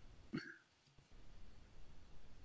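Mostly quiet video-call audio, with one short vocal sound from a person about a third of a second in.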